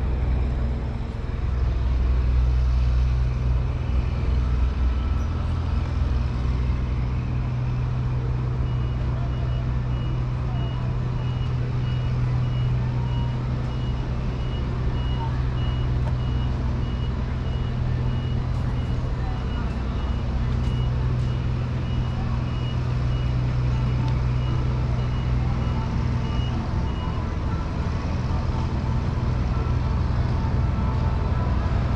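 A vehicle's reversing alarm beeps at an even rate over a steady low rumble, starting about nine seconds in and stopping a few seconds before the end.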